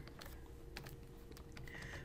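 Faint, light clicks and taps of a stylus writing on a tablet, a few scattered ticks over a low steady hum.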